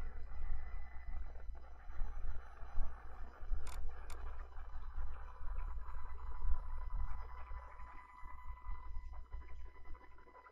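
Low, uneven rumbling noise with a faint steady whine, and two sharp clicks a little under four seconds in.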